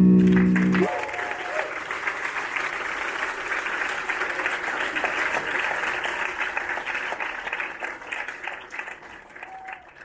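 A live band's held final chord rings for about the first second and cuts off, then the audience applauds, thinning out near the end.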